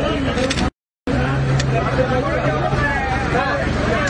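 Voices talking in a room, with the audio cutting out completely for about a third of a second near the start, then a low steady hum under the voices for a couple of seconds.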